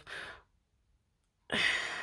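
A woman's breathy sigh: a short faint breath, then a gap of silence, then a longer, louder sigh starting near the end.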